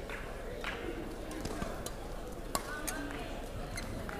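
Badminton rally in a sports hall: short clicks of rackets striking the shuttlecock, roughly one a second, and a brief shoe squeak, over the steady chatter of the crowd.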